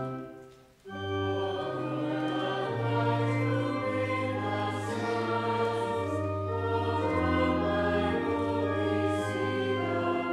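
An organ chord dies away, and after a pause of under a second, voices begin singing a slow sacred hymn or canticle with organ accompaniment, held chords over a moving bass line.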